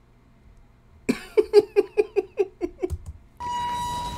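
A man laughing: a quick run of about ten 'ha' pulses, falling slightly in pitch, starting about a second in. Near the end a steady high hum comes in.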